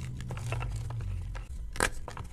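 Blocks of gym chalk crunching and crumbling as they are squeezed and crushed by hand, with many small crackles. Near the end a piece snaps with one loud, sharp crack.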